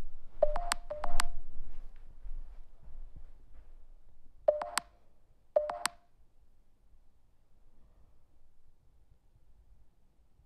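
Short electronic chirps, each a brief mid-pitched tone with a sharp click at its start, in two clusters of four: one in the first second and a half, another around five seconds in.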